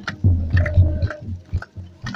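Festival procession crowd with drum beats and hand claps: low thumps a few times a second mixed with sharp claps.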